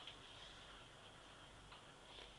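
Near silence: a whiteboard marker faintly drawing looping strokes, with a few light ticks.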